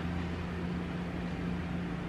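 Steady low hum with a faint even hiss: room tone.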